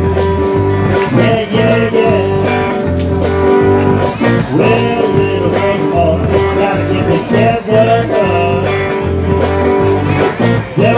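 Live band playing an instrumental passage with no vocals: electric guitar lead line with bending notes over a steady bass guitar and drums.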